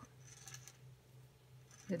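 Faint rustle and light scratching of yarn over a metal circular knitting needle as stitches are cast on, over a steady low hum.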